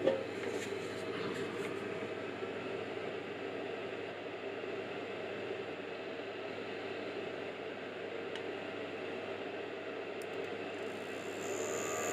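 Steady background noise, then about a second before the end a small 12 V DC brushless cooling fan spins up with a thin high whine. It starts because the bimetal temperature switch, heated to its 45 °C rating, has closed and put power to the fan.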